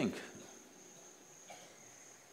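Crickets chirring in a steady high-pitched drone.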